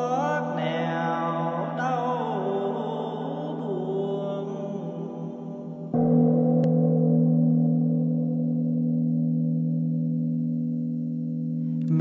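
A chanting voice holds and glides through a long sung phrase over the steady hum of a large bell still ringing. About six seconds in, the bell is struck again and rings out, slowly fading.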